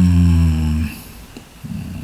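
A man's long, low 'mmm' hum held on one steady pitch, ending just under a second in; a short, quieter low vocal sound follows near the end.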